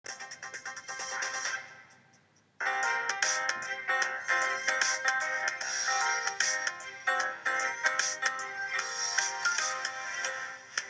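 Television news channel ident and programme title music. A short pulsing electronic sting fades out, then a fuller theme starts suddenly about two and a half seconds in, with quick, repeated high notes over a steady beat.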